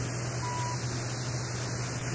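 A short beep at one steady pitch, about half a second in, over steady hiss and a low hum: the frame-advance cue tone of a filmstrip soundtrack, signalling the change to the next frame.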